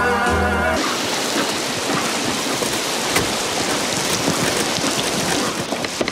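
Music from a car radio cuts off suddenly about a second in, and a steady heavy downpour of rain carries on alone.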